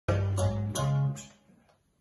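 An accordion and keyboard duo playing three or four quick struck chords over low bass notes, which ring out and fade about halfway through.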